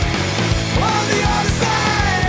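Rock music with a fast, steady drum beat.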